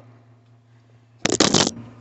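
Handling noise from a phone being fumbled: a loud, half-second rustling crackle as hands grab and rub against the phone's microphone, a little past a second in.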